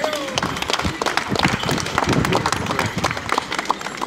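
Onlookers clapping and applauding at the end of a Morris dance, with people talking; a brief falling note or call right at the start.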